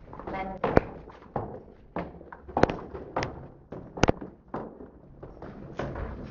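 Footsteps going down concrete stairs: a string of sharp thuds about every half second to second.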